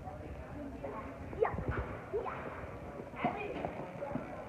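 Children calling and shouting in a large echoing indoor sports hall during a soccer game. There are a few low thuds from play on the turf about a second and a half in.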